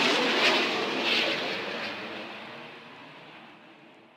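An airplane passing overhead: a broad rushing noise that fades steadily away to silence.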